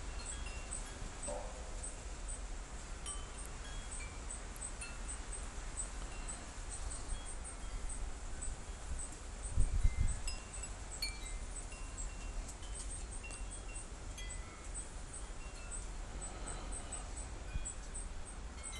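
Wind chimes tinkling sparsely: scattered short high tones over a faint steady hiss. A single low thump comes about ten seconds in.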